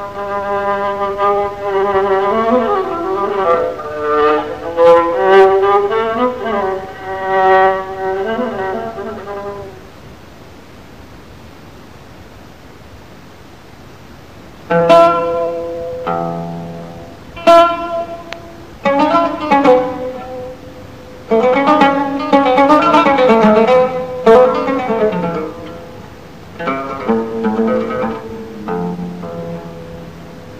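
Solo improvisation (taqsim) in Moroccan Andalusian style on a bowed string instrument, with long sliding, ornamented notes, dying away about ten seconds in. After a pause of about five seconds a plucked string instrument takes over with short improvised phrases of struck notes.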